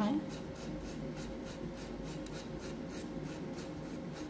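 Metal palette knife scraping and scooping sculpture paste off the work surface: a run of short scrapes, about three or four a second.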